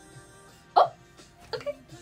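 A woman's short, sharp vocal sound partway in, then two quick softer ones like a small chuckle, over faint slow pop music.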